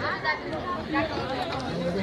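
Background chatter of people talking at a public gathering, with faint overlapping voices and no single clear speaker.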